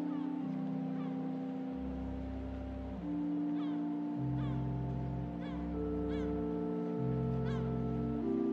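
Organ music: slow, sustained chords with deep bass notes, changing every second or few. Short high chirps come over it several times in the second half.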